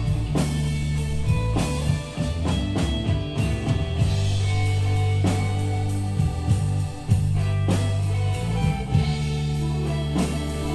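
Live band playing an instrumental passage of a slow song: acoustic guitar and bass guitar over a steady drum kit beat, with sustained low bass notes.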